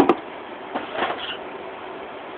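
A single sharp clack from the tin can being handled right at the start, then brief rustling about a second in.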